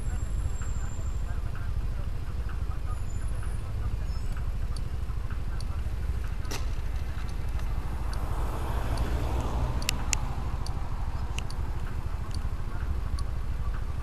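Motorbike riding slowly in traffic: a steady low rumble of the engine and wind on the mic, with a few sharp clicks about halfway through.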